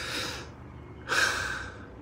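A man's breathing in a pause between sentences: two audible breaths, one at the start and a slightly louder one about a second in.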